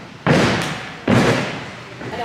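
Two heavy thuds about a second apart: a gymnast's feet landing leaps on a carpeted spring floor, each trailing off in the echo of a large gym hall.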